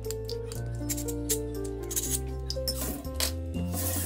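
A kitchen knife drawn again and again through a handheld pull-through knife sharpener: a quick run of short scraping strokes, several a second, over background music with sustained notes.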